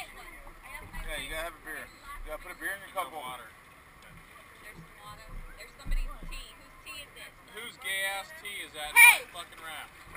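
Indistinct voices of people in the river talking and calling out, with one loud call about nine seconds in. A dull low bump comes about six seconds in.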